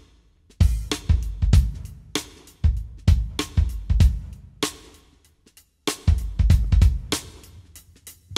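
Yamaha drum kit with Sabian cymbals played in a run of accented hits, kick drum and cymbal crashes ringing off between strokes. The hits are broken by short pauses, with a gap of about a second just before the end.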